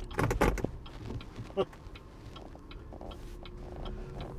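Cabin noise of a BYD Atto 3 electric SUV driving slowly: a steady low road and tyre rumble with a faint steady hum and no engine sound.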